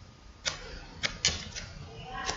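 Three short, sharp clicks over low room noise: one about half a second in, then two close together about a second in. They are small handling sounds.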